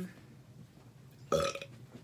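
A person burping once, briefly and loudly, a little over a second in.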